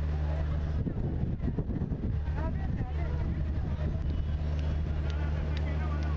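A steady low motor hum, like an engine running nearby, with faint voices over it.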